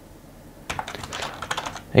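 Typing on a computer keyboard: a quick run of keystrokes entering a short word, starting a little under a second in.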